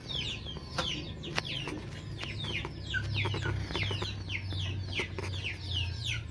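Young chicks peeping steadily: many short, high cheeps that fall in pitch, several a second, over a low hum.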